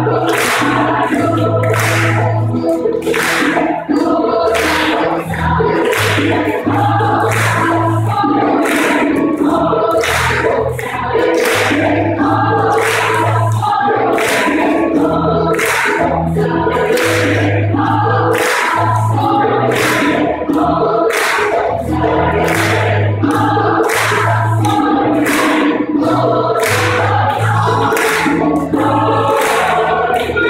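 Large, mostly female gospel choir singing an upbeat song in a church, with hand claps on the beat about one and a half times a second and low bass notes underneath.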